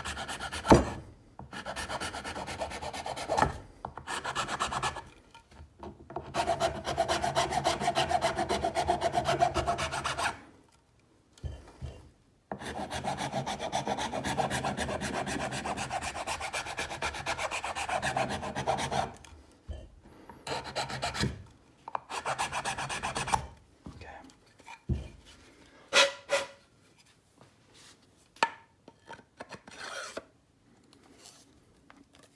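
Sandpaper rubbing fast back and forth on the inner side walls of a wooden Remington 1100 shotgun stock, in three long bouts with short pauses between them, widening the opening so the stock fits. In the last third the sanding gives way to scattered clicks and knocks of the parts being handled.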